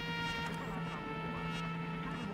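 A steady buzzing hum made of several held tones, with no clear rhythm or pitch change.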